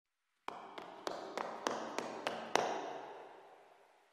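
A run of eight sharp taps, about three a second, the last one the loudest, each ringing on and the whole fading away over the following second.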